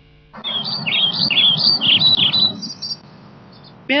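Birds chirping: a quick run of short, high chirps lasting about two seconds over a low steady background noise, then stopping.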